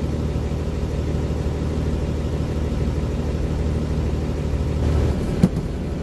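Old Mercedes-Benz truck's diesel engine running steadily, heard from inside the cab, with the gearbox in low range; the engine note swells slightly about five seconds in, followed by one sharp click.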